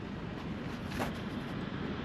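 Steady background rumble of a passing train, with one faint click about a second in.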